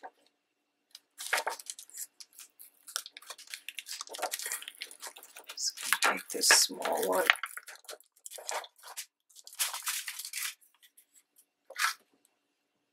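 Clear plastic stamp sheet crinkling and rustling in short bursts as a clear text stamp is peeled from it and handled.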